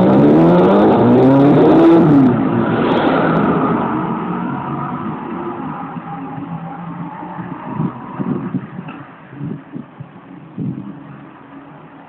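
Custom Kawasaki KZ1000 (Z1000) motorcycle's air-cooled inline-four engine accelerating away, its pitch rising twice through the first two gears in the first two seconds, then fading steadily as the bike draws off.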